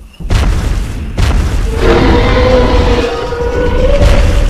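Cinematic intro sound effects: two heavy booms about a second apart over a steady hiss, then a long held pitched tone from about two seconds in.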